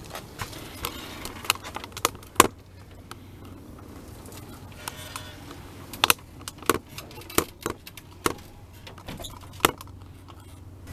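Power wheelchair rolling up a van's fold-out ramp: scattered sharp clicks and knocks, the loudest about two and a half seconds in and a cluster in the second half, over a low steady hum.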